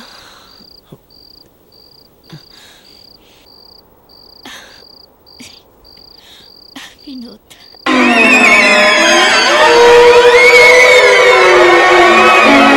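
A cricket chirps steadily and high, about two chirps a second, under faint short breathy sounds. About eight seconds in, a loud, dissonant horror-film music sting cuts in suddenly, full of sliding, wailing tones.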